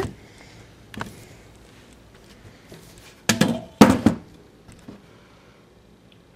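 Camera handling noise as the camera is moved and set in place: a light knock about a second in, then two louder knocks about half a second apart a little past the middle.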